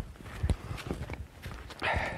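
A hiker's footsteps on a muddy forest path: a few soft, irregular steps.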